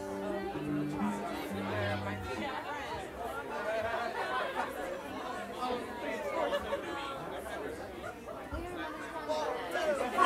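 Indistinct chatter of many people in a room, with no words clear. In the first two seconds or so a few soft held instrument notes sound over it, then fade.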